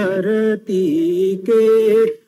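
A man singing a Hindi devotional song into a microphone, in long held notes with wavering pitch and short breaks between phrases.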